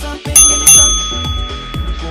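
Interval-timer bell chime struck twice, about a third of a second apart, ringing on for over a second: the signal that a timed interval has ended. Dance music with a steady beat plays under it.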